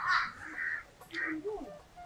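A crow cawing in the background: one harsh call lasting just under a second, then a shorter one about a second in.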